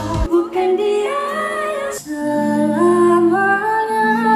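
A woman singing a slow melody with long held notes into a microphone. The drums and bass drop out just after the start, leaving the voice almost alone, and soft sustained backing chords come in about halfway through.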